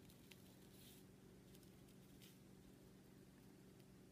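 Near silence: room tone with a faint steady hum and a few very faint ticks.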